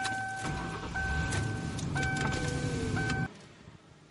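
Car engine starting and running in the cabin, with a warning chime sounding over it as a held tone that breaks briefly about once a second. Both cut off abruptly a little over three seconds in.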